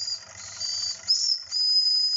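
Steam whistle from an older Wilesco D10, fitted with a handle on the boiler of a Wilesco D101 model steam engine, blown by hand in short blasts. It gives a thin, high, steady tone that starts and stops about four times, the last blast the longest. It whistles only a little.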